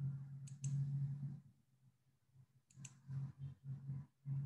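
Two quick double clicks of a computer mouse, about two seconds apart, over a low hum that comes and goes.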